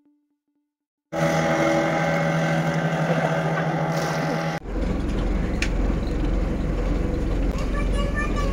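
After about a second of silence, the outboard motor of a small fishing boat runs steadily as the boat passes, a hum with several held tones. Midway the sound cuts to a deep, steady boat-engine drone with water noise, heard from aboard a moving boat.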